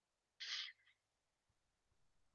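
A person's short, sharp breath close to the microphone, about half a second in, with a fainter second puff just after.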